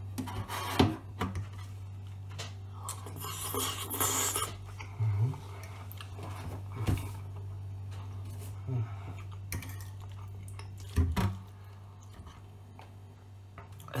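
Metal fork clinking and scraping on a plate while eating, a few sharp clinks spread out over the time. A steady low hum sits underneath.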